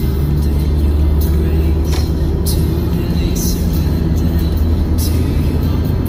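Music playing over the steady low rumble of a car driving at highway speed, heard from inside the cabin.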